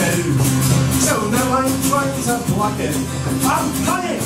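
Live folk-punk band playing. An acoustic guitar is strummed over a steady beat, with a bending melody line on top.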